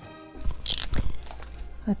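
Short handling noises close to the microphone: a rustle with a couple of light knocks as a coloured pencil is set down and a white marker picked up, over a low steady hum.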